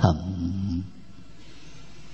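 A man's voice trailing off on a held low nasal hum at the end of a spoken word, lasting under a second, then faint steady room tone through the microphone.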